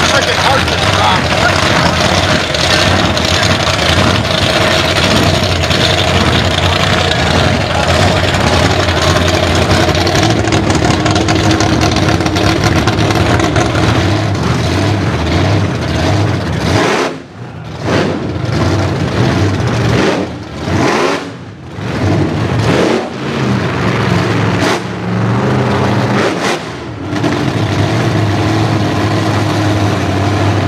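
Supercharged gasser drag-racing engines. A loud, steady engine run fills the first half. After that, engines idle and rev in short bursts with brief lulls as two gassers roll up to the starting line, then settle into a steadier idle near the end.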